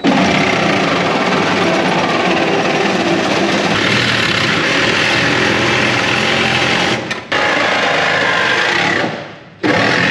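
A power tool cutting car body sheet metal, running loud and steady. It breaks off briefly about seven seconds in, then winds down near the end and starts again.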